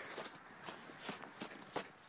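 Footsteps in thin snow, a quick, uneven run of soft steps.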